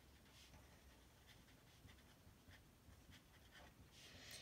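Faint, irregular scratching of a pen writing on paper.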